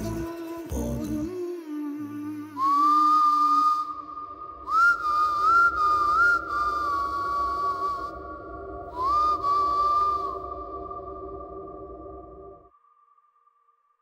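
Closing bars of a film song: a whistled melody in a few short phrases, each sliding up into its note, over sustained string chords. The last sung note dies away in the first second. The music fades and stops near the end.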